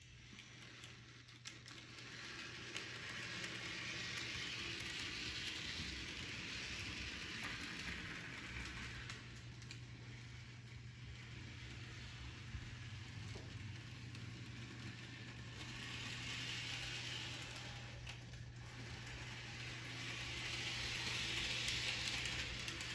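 HO scale model train locomotive running along its track pushing two flatcars: a steady, quiet whirring hiss of the motor and wheels on the rails over a low hum, swelling and fading a few times.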